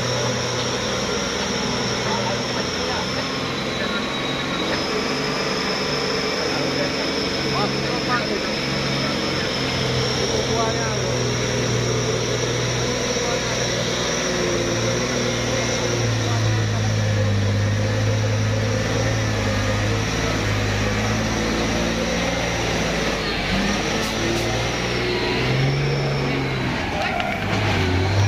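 Mitsubishi Fuso 220PS diesel dump truck engine working under load as the truck crawls through deep mud, its note rising and falling with the throttle and growing louder as it comes close.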